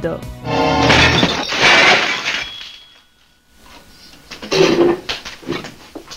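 Dishes and glasses smashing, crockery shattering in a dense crash about a second in, just after a short musical sting; a few brief clatters and a short voice follow near the end.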